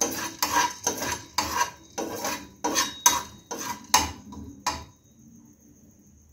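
A spatula scraping and knocking around a nonstick kadai, stirring whole cloves and black peppercorns as they dry-roast without oil, about two strokes a second. The stirring stops near the end.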